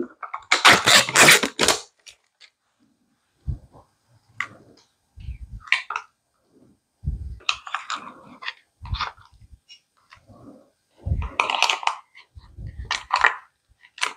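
A plastic tub of sour cream being opened and emptied over a stainless steel mixing bowl: a loud crinkly rustle for about a second and a half at the start, then scattered taps, knocks and soft scrapes as the thick cream is scraped out onto the flour.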